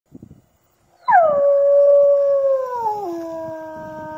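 A recorded wolf howl played through a handheld megaphone loudspeaker, the simulated howl used to provoke replies from wild wolves in a howling survey. One long howl begins about a second in, slides down from a high start and holds, then drops to a lower pitch near three seconds in and holds there.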